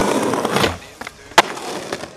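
Background music cuts off just before a second in, leaving a skateboard rolling on stone paving, with one sharp clack of the board about halfway through.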